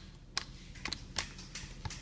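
A handful of light, sharp clicks and taps, spaced unevenly, over faint background hiss.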